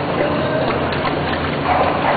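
A border collie swimming in a pool, her paddling stirring up splashing water, over steady background noise.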